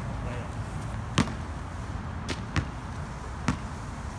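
A basketball bouncing on a hard court: four sharp bounces at uneven spacing over a steady low background rumble.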